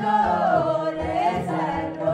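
Mixed choir of men's and women's voices singing an Amharic Ethiopian Orthodox hymn, with long held notes that rise and fall in pitch.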